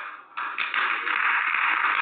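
A loud burst of hiss-like noise on a telephone call-in line, lasting about a second and a half before cutting off suddenly.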